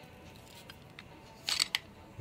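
A dagger blade drawn from its scabbard: a short scrape about one and a half seconds in, ending in a light click.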